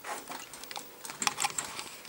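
Keys clicking on a computer keyboard: irregular taps, thickest in the second half.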